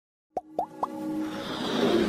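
Logo-intro sound effects: three quick plops rising in pitch, one after another, starting about a third of a second in, then music swelling with a rising whoosh.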